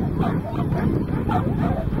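Dogs barking and yipping in quick repeated calls, with wind rumbling on the microphone.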